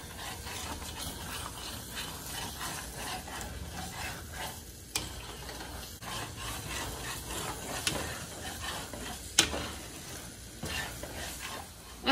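Scrambled eggs and maguey flowers being stirred in a stainless steel frying pan with a metal utensil, over a soft sizzle of frying. Three sharp clicks of metal on the pan, the last and loudest about three-quarters of the way through.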